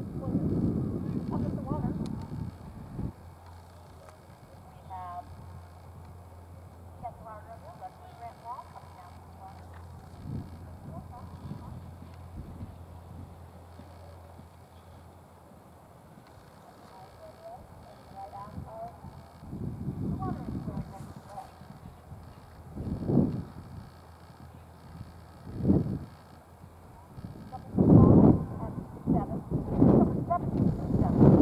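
Outdoor ambience with small birds chirping now and then over a steady low hum, and several loud low rumbles and thuds in the last third.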